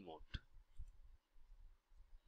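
A single mouse click about a third of a second in, otherwise near silence.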